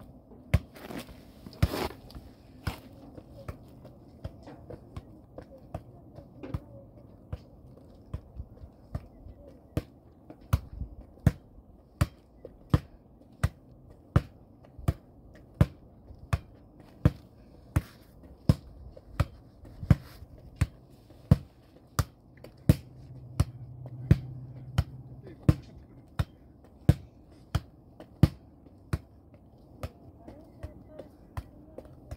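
An anyball exercise ball on a cord being swung so that it strikes again and again in a steady rhythm, about three sharp knocks every two seconds.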